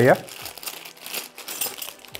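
Plastic bags crinkling as hands rummage through small bagged metal box corner fittings, a quick, irregular rustle.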